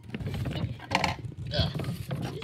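A door being pushed and bumped, with low knocking and handling noise, and a voice muttering "uh" near the end.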